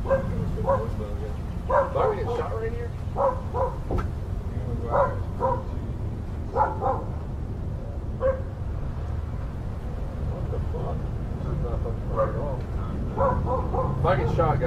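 A dog barking repeatedly in short groups of two or three barks, over a steady low hum.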